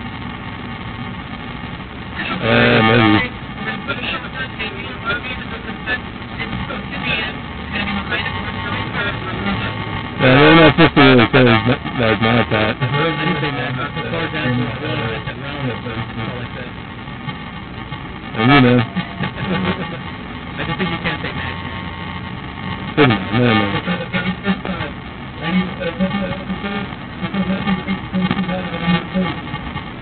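Several short, loud bursts of unintelligible voice over a steady background hum: one about two seconds in, a longer one about ten seconds in, and two brief ones near eighteen and twenty-three seconds.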